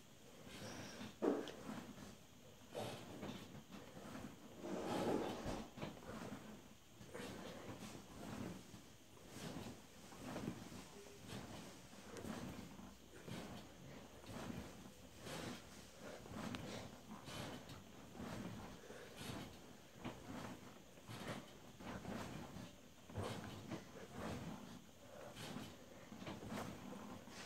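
Breathing and body movement of a person doing sit-ups, with a short puff or rustle about once a second.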